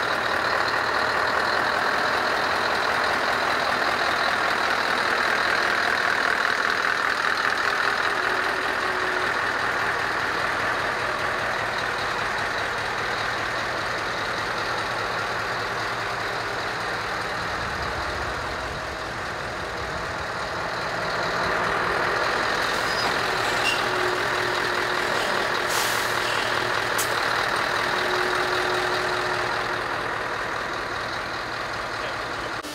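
Heavy Scania truck diesel engine running steadily close by. It eases off a little after halfway and rises again, with a few short clicks near the end.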